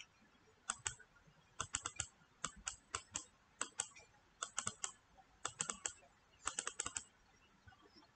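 Faint computer mouse clicks in quick little bursts of two to four, about one burst every second. The clicks step a phase-shift angle up and down on screen.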